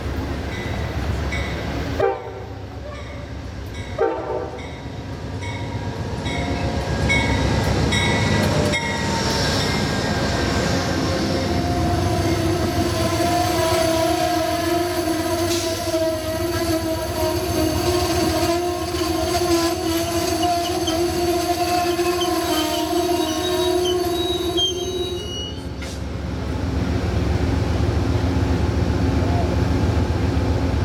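Amtrak passenger train pulling into the station: a locomotive bell ringing at first, then the cars rolling past with a steady, long brake squeal that cuts off suddenly as the train comes to a stop, leaving a low rumble.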